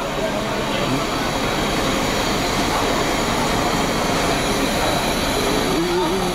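Large tour coach standing with its engine running, a steady, even drone and rush.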